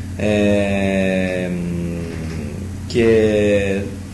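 A man's drawn-out hesitation filler 'eh', held at a steady pitch for about two seconds, followed by a second long-held vowel near the end.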